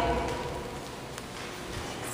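Quiet room tone with a low hum that fades early on, and one faint click just after a second in.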